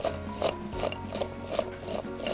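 Chunks of raw lotus root tossed and shaken in a glass bowl, rubbing and knocking against the glass as they are coated with salt and olive oil, over background music.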